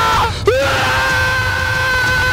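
Men screaming at the tops of their voices in a shouting exercise: one shout breaks off, then about half a second in a single long, high yell is held at a steady pitch.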